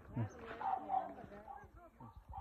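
A person's voice talking, with no other clear sound.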